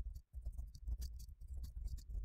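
Typing on a computer keyboard: a quick, irregular run of light keystroke clicks.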